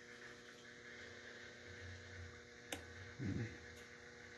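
Faint steady electrical hum, with one sharp click near the end: a relay on the Raspberry Pi HVAC controller switching off the heating stage and zone 1 damper outputs. A brief low sound follows just after the click.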